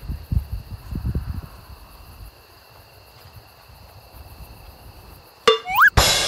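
Steady high-pitched chirring of crickets, with wind buffeting the microphone in low gusts over the first two seconds. Near the end a sharp click and a quick rising whistle-like sweep.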